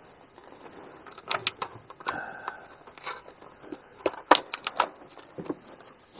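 Plastic blister packaging crackling and snapping as a clip-on car air freshener is worked out of it, a string of irregular sharp clicks that bunch up about four seconds in.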